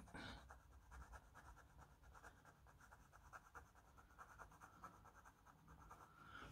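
Very faint, quick scratching of a Caran d'Ache watercolour pencil, drawn on the side of its point, scribbling colour onto the textured surface of a Caran d'Ache palette.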